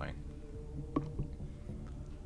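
Tormek T4 wet sharpening machine running with a steady low hum, with a couple of light clicks about a second in.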